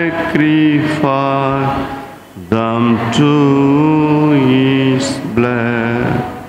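A man's voice singing a slow hymn in long held notes, phrase by phrase, with a breath about two seconds in.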